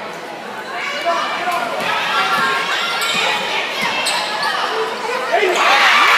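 A basketball being dribbled on a hardwood gym floor, under spectators' voices and shouts that echo in a large gym and grow louder near the end.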